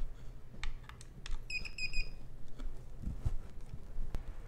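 Silvertron Elite colloidal silver generator giving about three quick, high electronic beeps as it is powered up, after a few light clicks from handling the unit and its plug.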